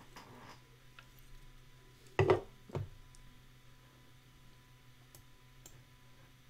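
Two swallowing gulps while drinking from a can, about two seconds in and half a second apart, over a few faint mouse clicks.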